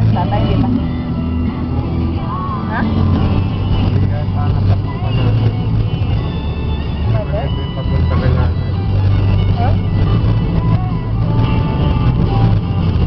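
Car cabin noise while driving: a steady low engine and road rumble, with voices and music playing over it.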